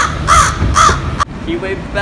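American crow cawing three times in quick succession, short calls a little under half a second apart.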